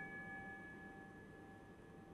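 The ring of an altar bell dying away slowly in a few steady tones, sounded at the elevation of the consecrated host.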